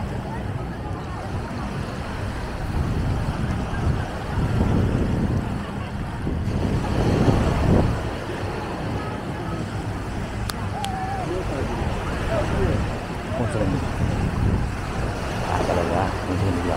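Beach ambience: wind buffeting the microphone and small waves washing onto the sand, with faint voices of people in the background.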